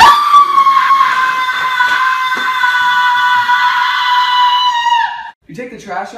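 A high-pitched human scream held at one pitch for about five seconds, sagging slightly just before it cuts off.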